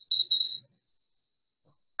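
A high, thin whistling tone, held steady and swelling in two short pulses, that cuts off suddenly about half a second in.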